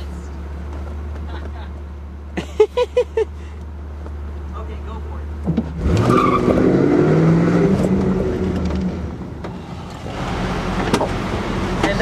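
A Pontiac Firebird's engine running steadily at low revs, then revving up suddenly about six seconds in as the car accelerates away.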